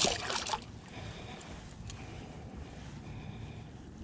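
A small striped bass splashing and thrashing in shallow water as it is lifted out by hand, loud for about half a second. After that, only a low steady hiss of water and wind.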